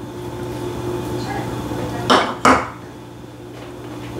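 A small cup knocks twice in quick succession against a stainless steel mixing bowl while chopped bell pepper is tipped in.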